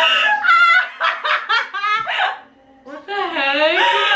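Young women laughing hard: quick high-pitched giggling bursts, a short break about two and a half seconds in, then a long, wavering high-pitched laugh near the end.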